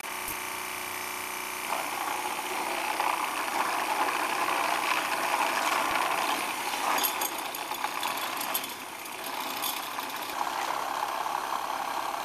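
A motor-driven machine running steadily, with a few brief high crackles about seven and nine seconds in.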